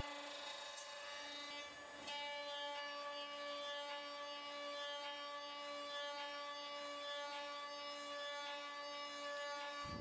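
CNC router spindle with a surface planing bit machining a rotating, off-centre wooden blank round on the rotary turning axis: a steady whine from the spindle.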